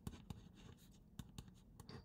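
Pen writing on paper: a run of faint, short strokes.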